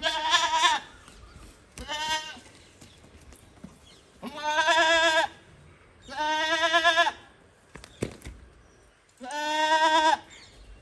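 Young Hyderabadi goat doe bleating five times, each call half a second to a second long with a wavering, quavering pitch.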